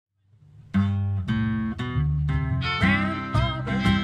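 A small acoustic country band playing live, with acoustic guitar, starting about three-quarters of a second in after a moment of silence.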